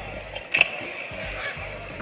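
Pro kick scooter wheels rolling and scraping on skatepark concrete, with a sharp clack about half a second in, over background music.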